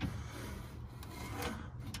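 Faint rubbing and scraping as the push-button latch of a 1962 Rambler American's old metal glove box is pressed and the door is swung down open, with a light click at the start.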